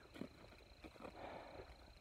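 Near silence: faint outdoor background with a few faint soft clicks, between phrases of speech.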